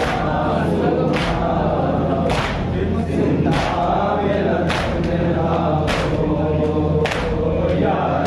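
A group of men chanting a Shia noha (lament) together, with hand slaps on the chest (matam) falling in time about every second.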